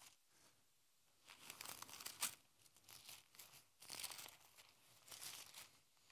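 Faint rustling of thin Bible pages being turned by hand, several separate flips over a few seconds while searching for a passage.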